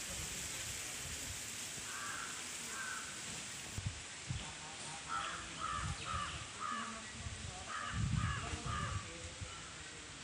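A bird calling outdoors in short runs of repeated calls, a couple at first and then several runs of three or four, over a steady hiss, with a few low thumps alongside.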